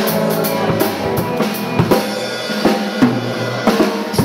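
Rock band music with the drum kit to the fore: a run of bass drum and snare hits, while the low bass notes thin out for much of the passage.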